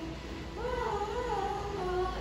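Young girls singing into handheld karaoke microphones, holding one long wavering note from about half a second in.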